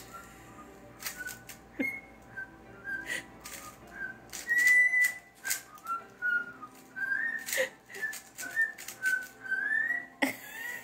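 Pet cockatiel whistling a string of short notes at about the same pitch, with one longer held note about halfway through, mixed with sharp clicks.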